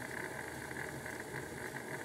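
Bachmann OO gauge GWR 4575 Class Prairie tank model running steadily on a rolling road: an even whir from its electric motor and gearing, with the wheels turning on the rollers.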